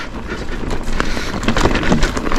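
Whyte S150 mountain bike rolling over a loose, stony dirt trail: a steady rumble of tyres on rock with frequent short knocks and rattles. Wind rushes over the helmet or bar-mounted action camera's microphone.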